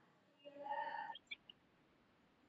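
A faint voice saying "ya" about half a second in, sounding distant and thin as if coming through a video call, followed by two or three tiny clicks.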